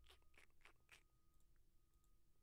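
Near silence with four faint clicks in the first second, from computer controls being worked.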